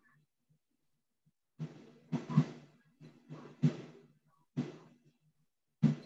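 A small brush worked over a hand-built clay piece on newspaper to smooth it: about six short, soft, scratchy strokes, starting after a quiet second and a half.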